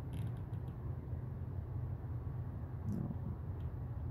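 Steady low background hum with a few faint clicks in the first half second.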